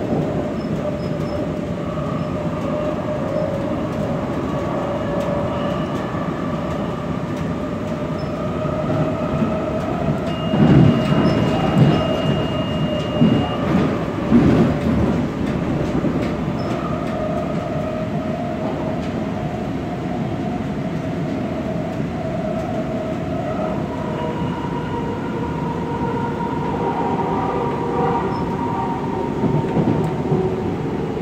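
Light rail car running along the track, heard from inside the car: a steady rumble with sustained tones, and a run of louder knocks a third of the way in. A thin, high wheel squeal lasts about three seconds over the knocks, and the tones shift in pitch a little after two-thirds of the way through.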